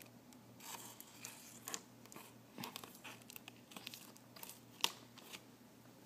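Razor blade slicing through clear plastic packing tape on a cardboard box: faint scratchy cuts and small clicks, with one sharper click near the end.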